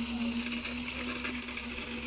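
Wet concrete clattering and rattling as a concrete boom pump's hose discharges it into formwork, over a steady, even machine hum.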